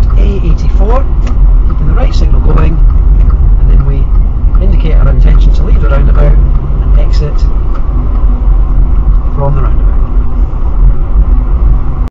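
Car driving at low speed, heard from inside the cabin: a steady low engine and road rumble as the car picks up speed gently. Indistinct voices run over it.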